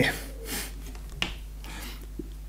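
A single sharp click a little over a second in, over a low steady hum.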